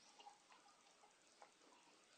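Near silence: room tone with a few faint, scattered clicks.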